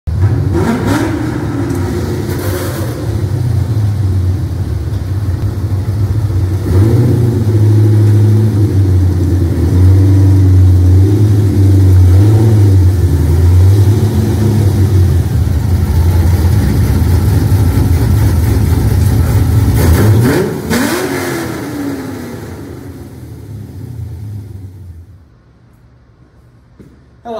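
Car engine with a deep exhaust note running loud and being revved several times, each rev rising and falling back, before the sound dies away in the last few seconds.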